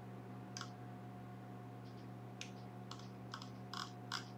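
Faint, scattered clicks of a computer keyboard in use, about half a dozen irregular taps over a steady low hum.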